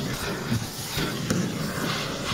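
Vacuum cleaner running, its hose nozzle sucking over car footwell carpet: a steady hiss.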